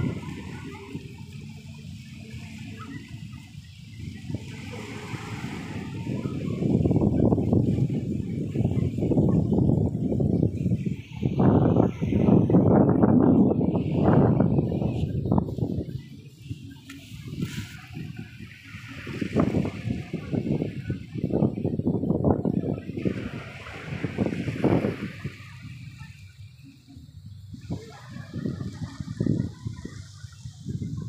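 Small waves washing onto a sandy beach among boulders, with wind on the microphone rising and falling in uneven surges.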